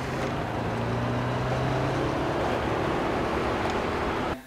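VW Beetle's air-cooled flat-four engine running steadily with road noise, heard from inside the cabin at low road speed, a steady low hum.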